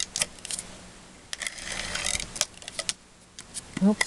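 Cardstock and small crafting tools handled on a desk: scattered paper rustles and light clicks, with one sharper click a little past halfway.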